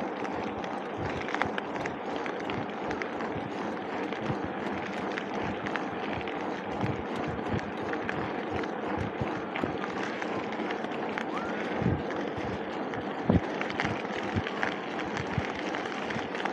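Mountain bike rolling along a cracked asphalt path: a steady rush of tyre and riding noise with frequent small rattles and clicks from the bike, and two louder knocks late on.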